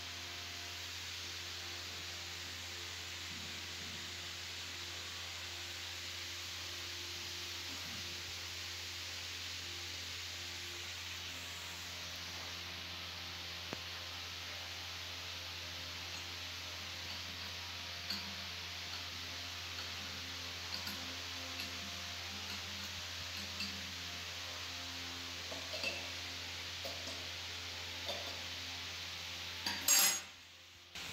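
Steady low hum and hiss in the workshop. From about halfway there are light metallic clicks and clinks as steel parts of a paper cutting machine are handled and fitted, with a sharper click near the end.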